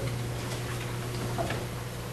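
Steady low electrical hum with a few faint, scattered ticks.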